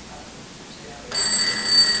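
An electric bell rings for about a second and a half, starting about a second in, then cuts off with a short ring-out. It is the chair's bell calling the committee meeting back to order.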